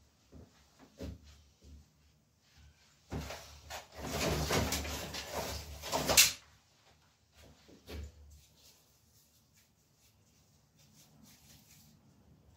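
Dry firewood sticks knocking and rattling as they are picked out of a pile by hand: a few light knocks, then a louder stretch of clattering and scraping from about three to six seconds in that ends in a sharp knock, and one more knock a little later.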